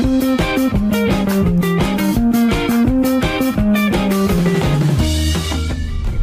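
Background music: a band track with drum kit and plucked guitar playing a steady beat, ending on a held chord near the end.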